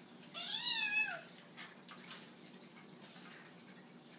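Kitten meowing once, a single call of about a second that rises and then falls in pitch, followed by a few short clicks.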